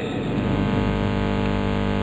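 A steady electronic buzz holding one pitch, with many overtones, starting abruptly as the speech cuts off mid-sentence and stopping as it resumes. It is a recording glitch, with the audio frozen into a constant drone.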